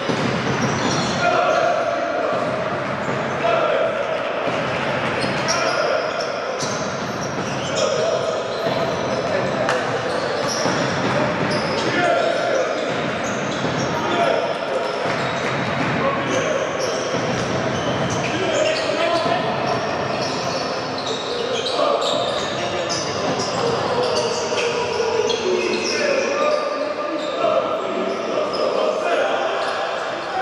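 Live basketball game sound in a large hall: the ball dribbling on the hardwood court and sneakers squeaking as players move, over the steady murmur of indistinct voices from players and crowd.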